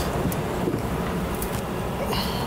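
Low steady outdoor rumble of street background and wind on the microphone, with a few faint paper crinkles as a greeting card is opened.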